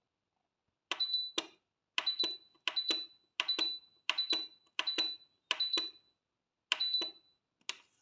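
SilverCrest SBB 850 D1 bread maker's program-select button pressed about nine times in a row, each press a click with a short high beep, stepping the program selection up to number 10.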